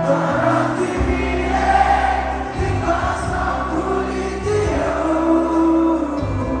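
Live band playing a song: sung vocals over acoustic guitar, electric guitar, bass guitar, drums and keyboard.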